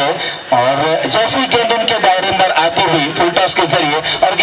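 Speech: a man talking continuously, live cricket commentary.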